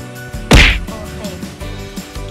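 One sharp, loud whack about half a second in, over background music.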